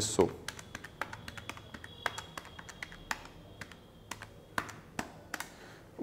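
Keys of a handheld electronic calculator being pressed in an irregular run of light clicks, entering figures to add up a total.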